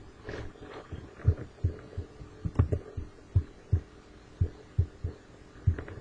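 Irregular dull low thumps, about a dozen, from a computer mouse and keyboard being worked on the desk and knocking through into the microphone, over a faint steady hum.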